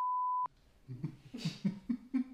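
A censor bleep: one steady high tone about half a second long that replaces all other sound, covering the word after "Holy". It is followed by laughing and coughing.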